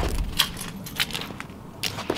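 A few light clicks and scuffs from shoes stepping on a concrete driveway close to the microphone: short sharp ticks about half a second in, about a second in and near the end.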